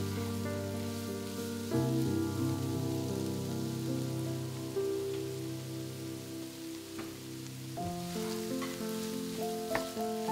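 Sliced sausages with bell pepper and onion sizzling steadily in a frying pan over medium heat, under background music of slow sustained chords that change twice.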